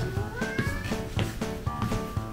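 Background music with a steady beat, over which a domestic cat meows once, a call rising in pitch about half a second in.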